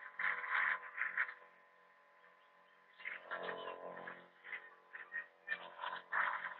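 Handheld garden spray wand misting liquid onto vegetable seedlings in short bursts, with quieter rustling and clicks between them.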